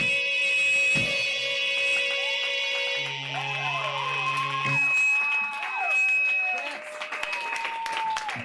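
Live electronic keyboard music: held tones, then from about three seconds in, many sliding pitches that rise and fall over a brief low held note, thinning out near the end.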